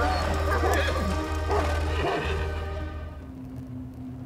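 Dramatic film score over a low sustained note, with horses whinnying a few times in the first two seconds; the sound fades away near the end.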